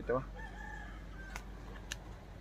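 A rooster crowing faintly, one drawn-out call about a second long. Two sharp clicks follow near the end.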